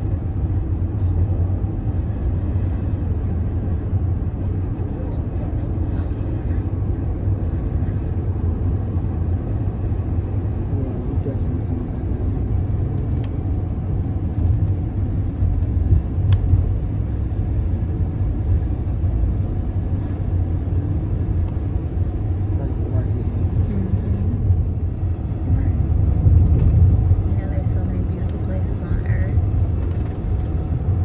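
Steady low rumble of a car driving at road speed, heard from inside the cabin.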